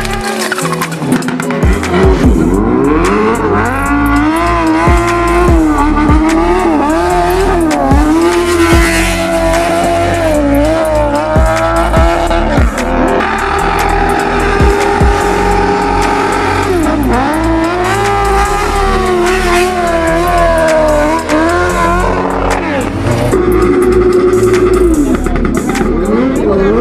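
Vehicles drifting: tyres squealing in long sliding tones, with engines revving, over music with a steady bass line.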